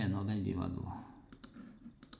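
A few short, sharp clicks as a word tile is selected in a language-learning exercise, two close together about one and a half seconds in and another at the end.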